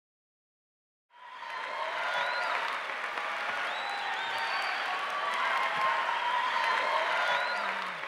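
Audience applauding, with a few voices calling out over the clapping. It starts suddenly about a second in and eases off near the end.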